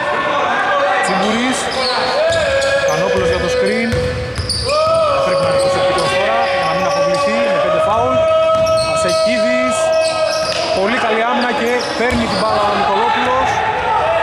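Indoor basketball game sounds: a ball bouncing on a hardwood court and short sneaker squeaks, under long held tones that echo in a large hall.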